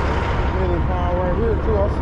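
A man's voice talking over a steady low rumble.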